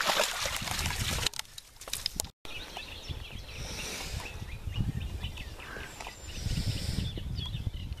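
A dog splashing out of a shallow stream on its lead, with knocks from the camera being handled. After a cut, an outdoor background of low rumbling on the microphone with faint bird chirps.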